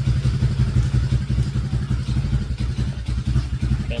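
Tao Tao D125 quad's small single-cylinder four-stroke engine idling steadily with an even, rapid chug.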